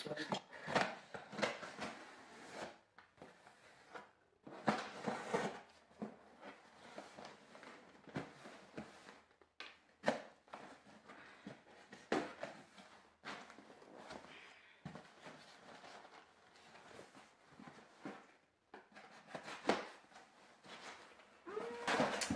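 A cardboard shipping box being cut open with a knife and its flaps pulled about: short, irregular scrapes and rustles of blade and cardboard.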